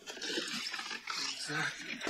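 Rustling and rummaging as someone digs through a bag of clothes, heard from a film's soundtrack, with a man's short spoken line about one and a half seconds in.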